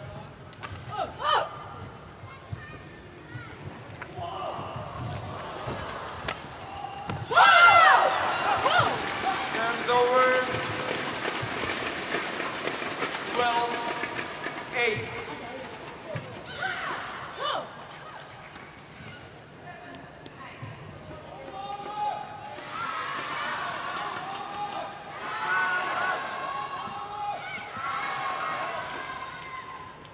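Voices in a badminton arena: a few sharp knocks early on, then loud shouting breaks out suddenly about seven seconds in and dies down, with more shouting voices near the end.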